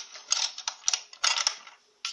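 Small metal parts of a Singer sewing machine clicking and rattling in several short bursts as the bobbin case is worked loose from its housing under the slide plate.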